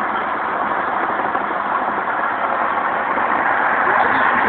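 Steady engine and road noise heard inside a moving car's cabin, with no revving or gear changes.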